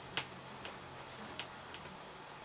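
About five short, sharp clicks at uneven intervals, the loudest just after the start and another a little past halfway, over a faint steady low hum.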